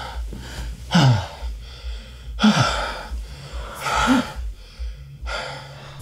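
A man's breathy gasping moans, about four of them one and a half seconds apart, each falling in pitch, over a low steady hum.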